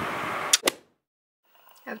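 A steady background hiss ends in two quick sharp clicks, then cuts to about a second of dead silence at an edit between clips.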